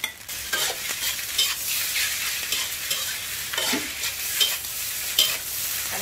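Fried rice sizzling in a hot wok while a spatula stirs and tosses it, scraping against the pan about twice a second over a steady high hiss of frying.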